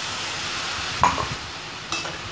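Mixed vegetables sizzling in a hot steel kadai as water is poured in, a steady hiss. A metal spoon clinks against the pan about a second in and again near the end.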